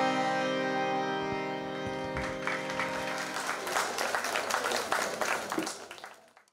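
A song ends on a long held note with its instrumental accompaniment, and about two seconds in an audience breaks into applause that fades out near the end.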